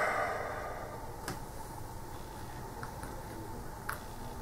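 Quiet room tone with a faint steady hum and two faint clicks, about a second in and near the end, from cardboard wargame counters being handled on the board.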